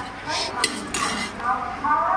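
Metal spoon and stainless steel tins clinking as ingredients are scooped and the mixing tin is handled, with a few sharp clinks in the first second.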